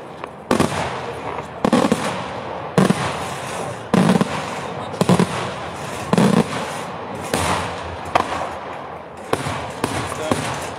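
Daytime fireworks by Pirotecnica Pannella: aerial shells bursting in a steady series of heavy bangs, about one a second, with lighter cracks in between.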